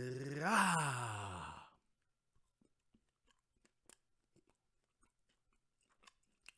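A man's drawn-out "mmmh" of enjoyment while tasting chocolate, its pitch rising then falling, lasting about a second and a half. Then only faint, scattered clicks of chewing.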